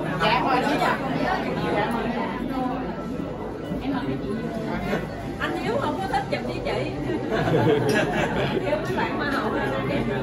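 Several people chattering over one another. Near the end, a voice repeats a greeting of welcome several times.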